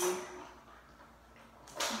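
Pause between a woman's sentences: her voice trails off, low room tone follows, and a short breathy hiss comes just before she starts speaking again.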